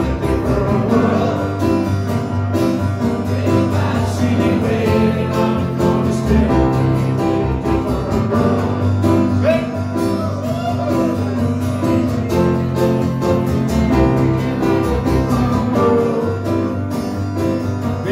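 A band playing an acoustic arrangement of a rock song: acoustic guitars strumming a steady rhythm, with some singing over it in the middle.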